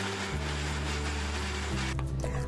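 Electric mixer-grinder running steadily as it grinds ginger and garlic into paste, then stopping just before the end, over background music.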